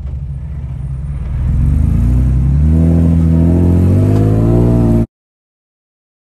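Game-drive vehicle's engine pulling away, getting louder about a second in and rising steadily in pitch as it accelerates; the sound cuts off abruptly about five seconds in.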